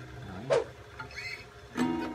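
Acoustic guitar: a strummed chord fades out, followed by a short scrape of the hand on the strings about half a second in. A new strummed chord starts near the end.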